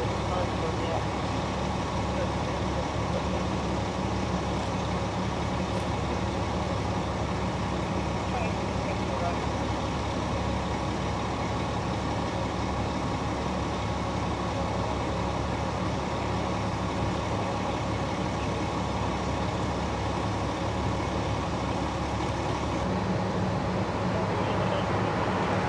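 Fire apparatus diesel engine idling steadily, a constant low rumble.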